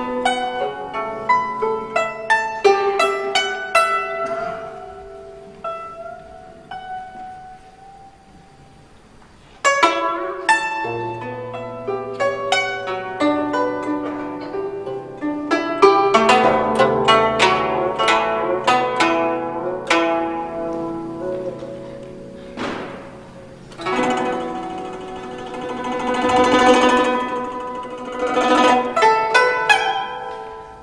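Solo guzheng played with plucked notes that ring and fade, some bending in pitch, during a quieter, sparser stretch. About ten seconds in a loud entry starts fast runs that grow denser and swell into a thick, loud passage near the end.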